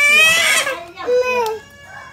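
A baby crying over an ice lolly held out of reach: a loud, high-pitched wail lasting most of the first second, then a second, shorter cry.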